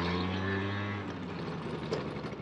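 Moped engine running at a steady pitch, its note falling away about a second in.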